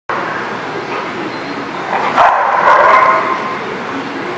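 Two dogs wrestling in play, with one dog giving a drawn-out vocalization about two seconds in that lasts roughly a second.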